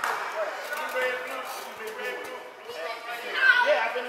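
Mixed voices and chatter in a large gymnasium hall, with one louder voice calling out about three and a half seconds in.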